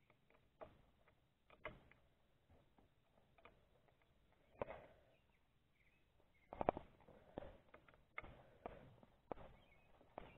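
Faint, scattered clicks and clinks of a wrench working a lower-unit mounting bolt as it is tightened, with a small cluster of them about six and a half seconds in.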